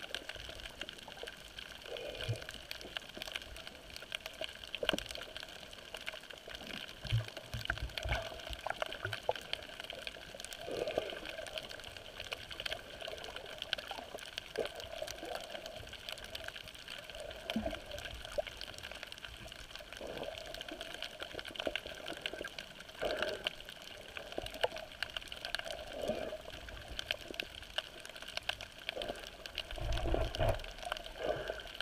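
Underwater sound picked up by a camera held below the surface over a coral reef: a steady wash with a faint hum and a constant crackle of fine clicks, broken by occasional low bumps.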